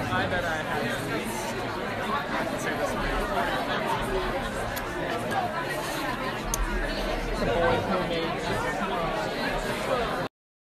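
A crowd of people chatting all at once in a packed room: a steady babble of overlapping voices with no single speaker standing out.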